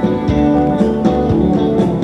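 Live rock band playing an instrumental passage: electric guitars and bass guitar over a steady beat of about two beats a second.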